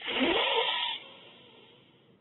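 A person drawing a deep, audible breath in close to the microphone. It is loud for about a second, then trails off.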